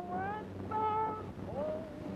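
A man's voice chanting in long, held notes that glide up and down, breaking off briefly about half a second in and again near the end. It is the chant that leads the congregation into the Eid prayer, heard on a 1930 film soundtrack.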